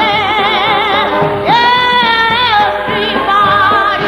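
Gospel song: a voice sung with heavy vibrato over music, holding one long note about a second and a half in.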